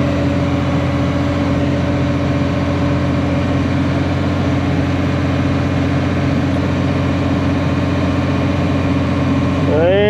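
Crawler dozer's diesel engine running steadily under load from inside the cab as it pulls a tile plow laying drainage pipe. Near the end a higher-pitched wavering sound rises in over the engine.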